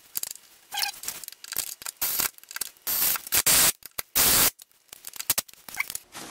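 Handling noise: a run of short scrapes and rustles, loudest in two bursts of about half a second each a little past the middle.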